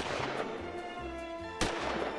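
Two pistol shots about a second and a half apart, each sharp and followed by a ringing tail, over background music.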